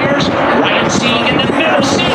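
A pack of NASCAR Xfinity stock cars at full speed, their V8 engines running together in a loud, steady drone that wavers slightly in pitch, with voices mixed in.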